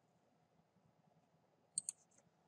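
Near silence, then two quick keystrokes on a computer keyboard near the end.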